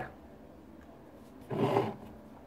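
A man's short, low groan of disgust about one and a half seconds in, after a quiet stretch of room tone.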